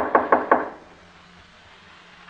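A quick run of about four knocks on a door in the first half second, a radio-drama sound effect.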